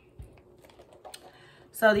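Faint handling of small accessories: a soft thump and a few light clicks and ticks as a wristlet and a kiss-lock coin purse are set down on a shag rug.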